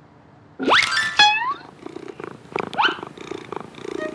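Cartoon cat purring in a soft, steady pulse, after a short high call that rises and then falls about half a second in.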